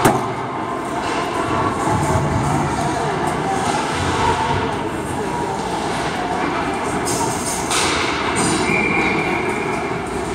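Steady rumbling ambience of an indoor ice rink with indistinct spectator voices, and a short knock at the very start.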